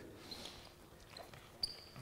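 Quiet sports-hall room tone, with a short high squeak of a sneaker on the court floor near the end.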